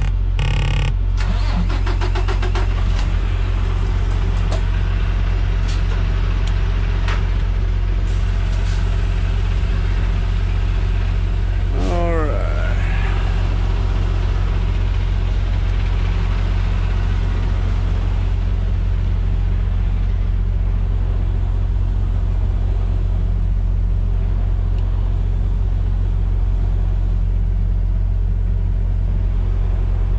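Semi truck's diesel engine running with a steady low drone, heard inside the cab as the truck rolls slowly. About twelve seconds in, a short squeal rises and falls in pitch.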